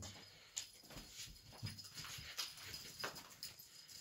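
A cat playing with a small toy on a laminate floor: faint, irregular taps and scuffs of paws and toy, several a second apart.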